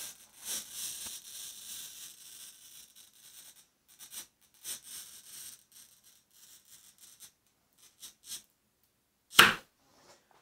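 Cheap handheld wheel glass cutter scoring quarter-inch mirror glass along a straight edge: a fine scratchy hiss for about three seconds, then scattered light scrapes and clicks. A single sharp knock comes near the end.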